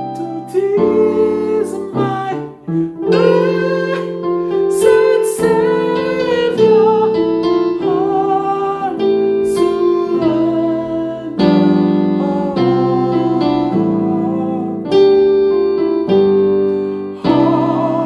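Keyboard with a piano sound playing a slow gospel chord progression in C with the melody on top: Cmaj7, Gm7, C7, Fmaj7, F#m7b5, B7b9, then the Em7–Am7–Dm7–G7 'anatole' turnaround back to C. Sustained chords change every second or two.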